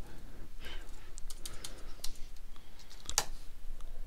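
Typing on a computer keyboard: irregular key clicks, with one louder keystroke a little after three seconds in.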